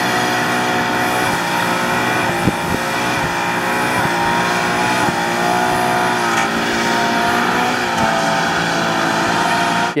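Supercharged Toyota GR86's 2.4-litre flat-four engine held at high revs through a drift, steady with a slight waver in pitch, with the rear tyres spinning. A short sharp crack about two and a half seconds in.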